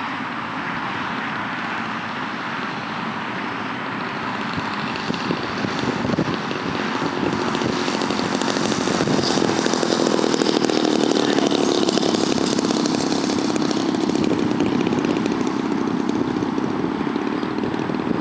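Small piston engine of a fixed-wing UAV buzzing steadily as the aircraft lands and rolls along the runway. It grows louder about halfway through.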